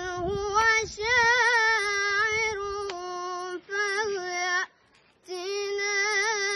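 A boy's high voice chanting Quranic recitation in melodic tajwid style, holding long notes with wavering ornaments, with a brief pause about five seconds in.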